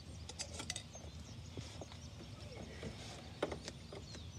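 Light mechanical clicks and knocks of hands working switches and fittings in an electrical compartment: a quick cluster of clicks about half a second in and a couple more near the end, over faint low background noise.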